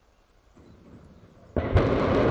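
Long March 2C rocket's first-stage engines igniting at liftoff: a faint rising rumble, then about one and a half seconds in a sudden loud, steady roar as the engines come up to full thrust.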